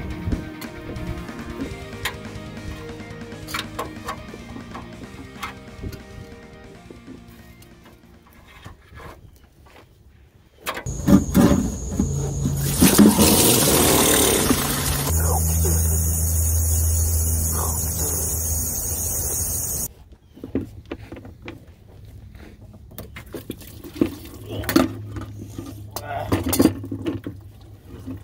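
Background music, then from about eleven seconds in a loud, steady gush of fluid splashing into a plastic bucket under the vehicle, which cuts off suddenly near twenty seconds; quieter music and small clicks follow.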